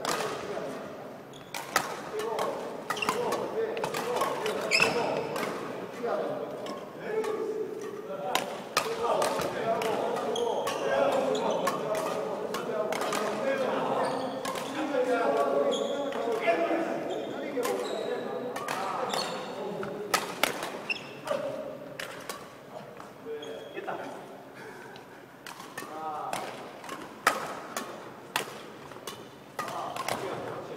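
Badminton rackets striking shuttlecocks in a feeding drill: a long, irregular series of sharp cracks, often one to two a second, in a large sports hall.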